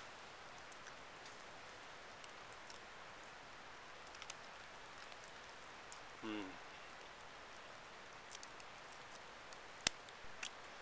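Light drizzle falling, a steady soft hiss with scattered faint ticks of drops. One sharp click comes just before the end.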